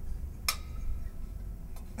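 A single sharp metallic click with a short ring about half a second in, then a fainter click near the end, over a steady low hum.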